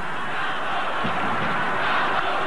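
Football stadium crowd noise: a steady din from a large crowd in the stands.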